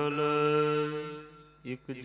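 A man's voice chanting Gurbani verses of the Hukamnama in a slow, drawn-out melodic recitation. One long held syllable fades out about a second and a half in.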